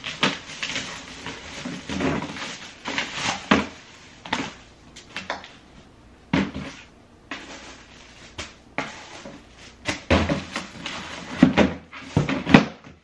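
Items being pulled out of a cardboard shipping box: irregular rustling, scraping and knocking of cardboard and a hard plastic mop bucket.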